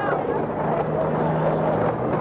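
Outdoor background noise on an old camcorder tape: faint voices, and a steady low hum that comes in about half a second in.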